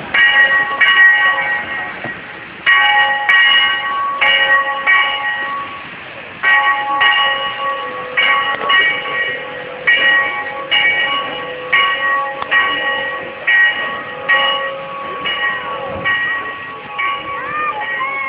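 Bell on the steam locomotive Sierra Railway No. 3, rung while the engine moves slowly. It rings in an even swinging rhythm, about one stroke a second, with two short pauses, each stroke ringing on as it fades.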